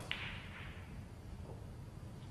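Quiet room tone of a snooker arena while a player settles over the cue ball before a shot, with one faint sharp click just after the start.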